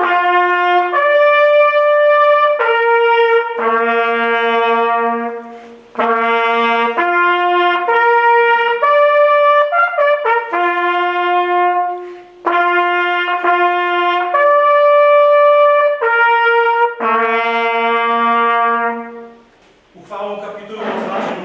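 Two coiled, valved brass hunting horns playing a tune together in long held notes, phrase after phrase, with brief breaks about six and twelve seconds in.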